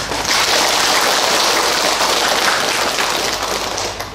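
Audience applauding: many hands clapping in a dense, steady patter that fades near the end.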